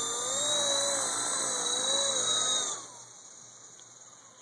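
Honey Bee FP V2 electric micro RC helicopter's Super 370 main motor and direct-drive tail motor whining in flight, the pitch wavering up and down as the throttle is worked. A little under three seconds in, the whine falls in pitch and fades as the helicopter is throttled down and lands.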